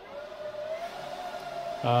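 Dell PowerEdge R730 server's cooling fans spinning up at boot: a steady whine over a soft rush of air that rises a little in pitch during the first second, then holds steady.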